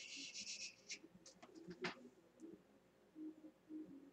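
Faint handling of makeup tools, an eyeshadow brush and palette: a brief scratchy rustle at the start, then a few light clicks a second or two in.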